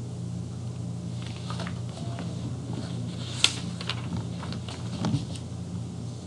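Steady low hum, with faint scattered rustles and clicks of a textbook's pages being leafed through, and one sharper click about three and a half seconds in.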